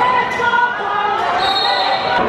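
Live sound of an indoor basketball game: a ball bouncing and sneakers on the hardwood court, with spectators' voices and shouts. A short high squeak comes in about one and a half seconds in.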